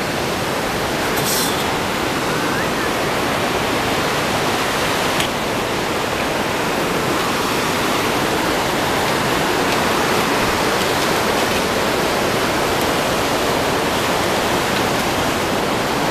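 Dudh Koshi, a fast glacial mountain river, rushing over boulder rapids: a steady, unbroken wash of water noise.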